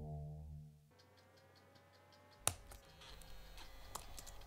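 A sustained synthesized tone fades out in the first second. Then come faint, quick ticking and a few sharp single clicks: keystroke sound effects for a title being typed letter by letter.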